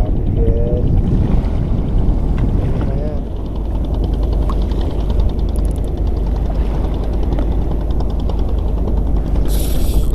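Wind buffeting the microphone over choppy sea water, a loud steady rumble. A spinning reel being cranked ticks faintly and quickly through the second half.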